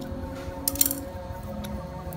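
A quick cluster of small sharp clicks about two-thirds of a second in, from the new capacitor and its wire leads being handled against the water pump's metal terminal box, over a steady hum.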